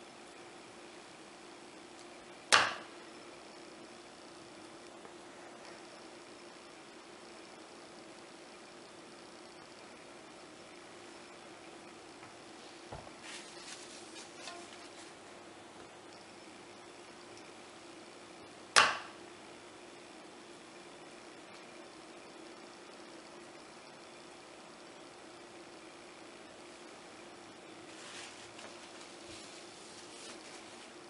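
Wooden wire soap cutter cutting a log of cold process soap: two sharp clacks about sixteen seconds apart, one per slice, with light handling sounds in between over a faint steady hum.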